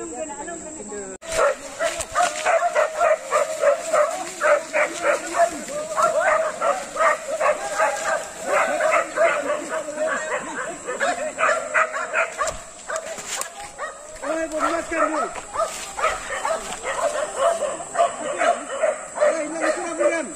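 A group of men shouting and hollering in quick, short, repeated calls, starting abruptly about a second in and keeping on without a break.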